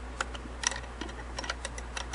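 Light metal clicks and taps, about eight, irregularly spaced, from a Singer 403A's bobbin case being handled against the hook and its race as it is seated.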